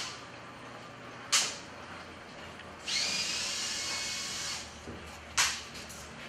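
A power drill runs for about two seconds, spinning up with a short rising whine and then holding steady. Sharp knocks come before and after the run, one in the first half and one near the end.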